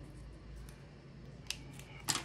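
Quiet tabletop handling of paper dollar bills and a marker, with light rustling and faint ticks and one sharp click about one and a half seconds in.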